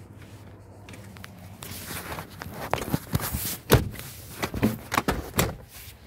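Rear seat cushion of a 2019 Honda Ridgeline being flipped up: a run of clicks and knocks from the seat's latch and hinge, the loudest a little past halfway, with rustling of the seat being handled.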